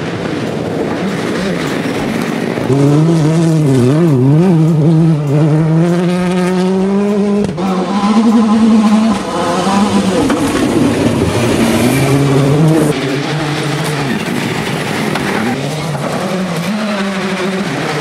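Hyundai World Rally Car's engine being driven hard at speed. The engine note climbs and drops sharply at gear changes, and it gets louder about three seconds in as the car nears.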